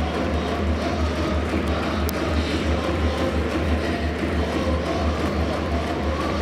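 Music playing over a ballpark's public-address system, with a steady low rumble beneath it.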